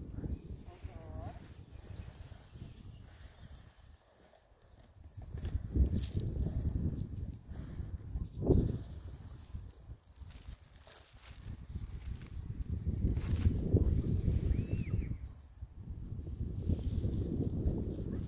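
Wind rumbling on the microphone in gusts that come and go, with a few faint short calls in the background.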